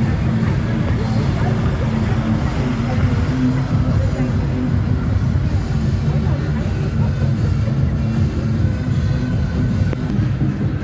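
Steady low running of a large diesel truck engine close by, mixed with voices and music.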